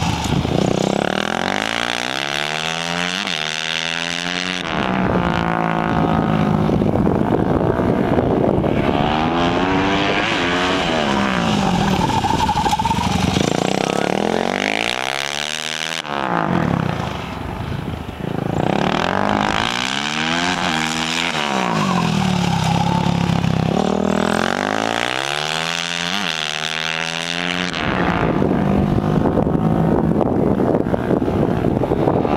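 Honda supermoto motorcycle engine revving up and down as the bike accelerates and slows around a cone course. Its pitch climbs and falls in repeated sweeps every few seconds, with a short drop in loudness about halfway through.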